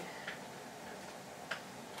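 Quiet room tone with two faint clicks, a few tenths of a second in and again about a second and a half in.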